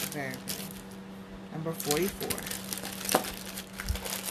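Crinkling and light clinking as costume-jewelry earrings on cardboard display cards are handled, with a sharp click about three seconds in.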